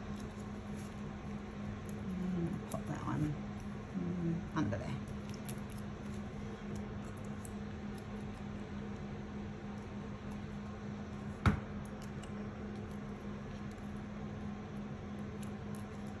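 Hands handling and placing paper and cardstock pieces on a scrapbook page: light rustling and small ticks over a steady low hum, with one sharp tap about two-thirds of the way through.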